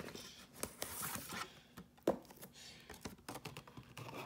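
A cardboard trading-card hobby box being handled and opened by hand: card stock rustling and sliding, with scattered taps and clicks. The sharpest is a knock about two seconds in.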